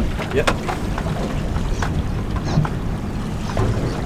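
Steady low rumble of wind and boat noise out on the water, with a few sharp clicks and taps as fishing lures and tackle are handled at the tackle tray.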